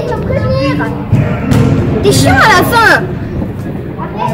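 Children shouting and squealing as they play, with a high cry sliding down in pitch a little after two seconds in, over music playing in the background.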